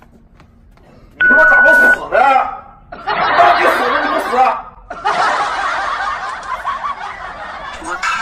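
People talking and laughing, with a short steady beep-like tone about a second in.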